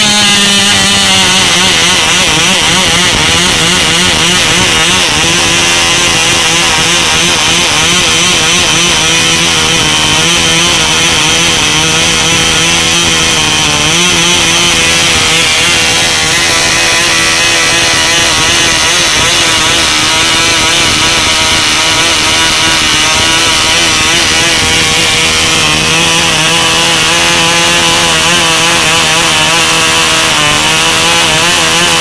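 1952 Cox Space Bug .049 two-stroke glow engine running on a test stand with a 6-3 propeller, a steady high buzz at around 13,000 RPM. It is run rich, four-stroking, so the note wavers slightly; its speed sags a little about a second in.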